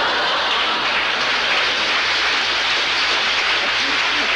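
Studio audience laughing and applauding at a joke, a steady, loud wall of clapping.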